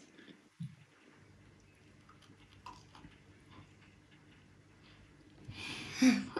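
Quiet room with faint crunching and clicks of someone biting and chewing crisp fried bread. A soft thump comes about half a second in.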